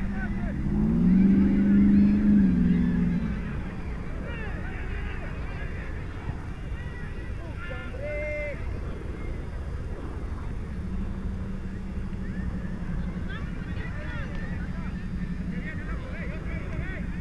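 Open-air ambience of a soccer match: distant players calling out across the field. In the first few seconds one long, loud pitched call or tone rises, holds and falls, and a steady low hum comes in past the middle.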